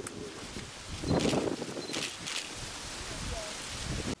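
Fresh figs poured from plastic buckets into plastic crates: a soft tumbling and rustling, loudest a little over a second in, with smaller pours around two seconds in.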